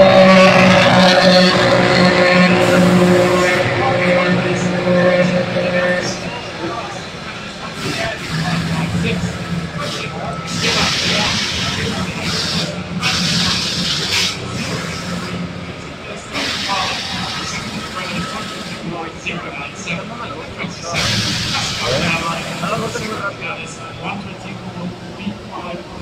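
Formula 1 car's V6 turbo engine idling in the pit box, a loud steady hum whose pitch sags slightly before it stops about six seconds in. After that come voices and several short bursts of hiss.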